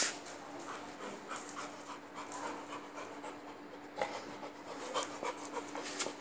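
A dog panting close to the microphone in short, quick breaths, with a brief loud noise at the very start.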